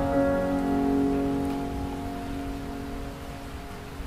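Background piano music: a held chord slowly fading away, with a steady rain hiss underneath.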